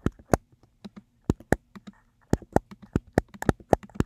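Typing on a computer keyboard: a run of quick, irregular keystrokes that come more thickly in the second half.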